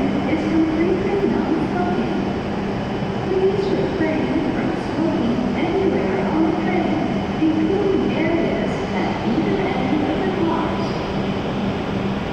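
E7 series Shinkansen train standing at a station platform with its onboard equipment running: a steady low hum with a constant low tone, under indistinct background voices.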